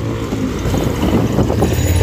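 Steady low rush of wind on the microphone and tyre noise from a mountain bike riding fast along a wet street.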